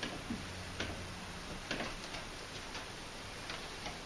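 Faint light ticks of a marker pen tapping and stroking on a whiteboard as numbers are written, a few clicks spaced irregularly about a second apart over a low room hum.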